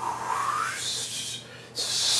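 A man blowing air out hard through pursed lips, the way one blows out cigarette smoke: one long blow, then a second, louder one starting near the end.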